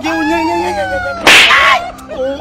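A loud slap hit about a second and a quarter in, a sharp noisy smack that rings on for about half a second and is the loudest sound here. Before it a man's voice holds one long drawn-out cry that slides down in pitch.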